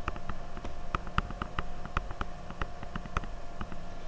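Light, irregular clicks and taps, several a second, from handwriting being drawn on a computer screen, over a faint steady electrical hum.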